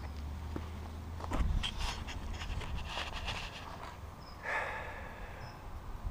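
Footsteps on pavement and handling noise from a handheld camera: a low rumble at first, a cluster of knocks and scuffs about a second and a half in, and a short rustle a little after the middle.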